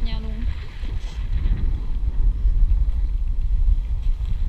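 Wind buffeting the microphone in a steady low rumble aboard a sailboat under sail, with water rushing and splashing along the hull.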